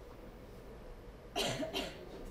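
A person coughs twice in quick succession into a podium microphone, over a low room hum.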